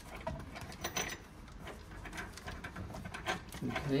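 Scattered light clicks and rattles of hand work on the underfloor heating wiring box: screws being undone and cables moved aside.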